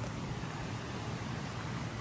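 Small mountain creek running over rocks: a steady rushing hiss.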